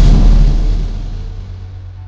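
A loud dramatic boom of a horror-style scare sting, struck at once and fading away over about two seconds, above a low droning music bed.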